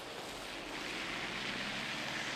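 Steady hiss of passing traffic, tyres running on a wet, slushy road, growing slightly louder.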